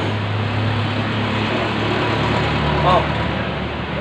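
A motor vehicle's engine running steadily with a low hum, its pitch stepping up a little past the middle, over street traffic noise.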